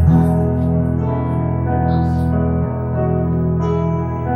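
Small band's instrumental intro: electric guitar and keyboard playing steady, sustained chords.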